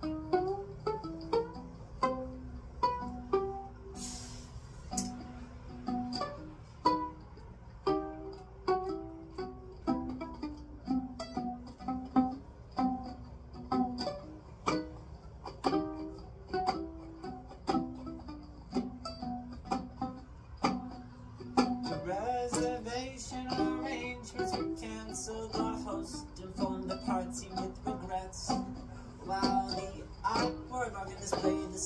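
Violin played pizzicato, held under the arm and finger-plucked like a ukulele: a repeating riff of short plucked notes. In the last third the plucking gets busier and denser.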